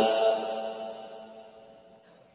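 A man's chanted Qur'an recitation ending a long held note on a brief 's' hiss. The echoing tail of the note then fades away over about a second and a half, to near silence.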